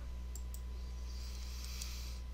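Two faint computer mouse clicks over a steady low electrical hum.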